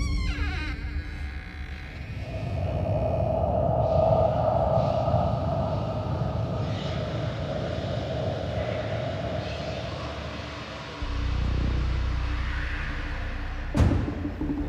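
Suspense film score: a low rumbling drone under a sustained mid-pitched tone, swelling lower about eleven seconds in, with a sharp hit near the end.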